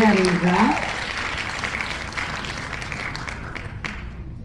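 Recorded crowd applause and cheering, the winner sound effect of an online name-picker wheel, heard through a shared screen. A short vocal whoop rises and falls in the first second, and the clapping cuts off abruptly just before the end.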